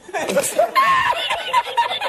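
A man laughing hard in a high-pitched cackle, in quick repeated bursts broken by a few words: a laughing-meme clip edited into the video.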